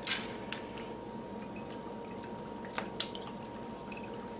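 Worcestershire sauce shaken from a glass bottle into a bowl of ground meat: a few faint drips and light clicks, two of them close together near the end.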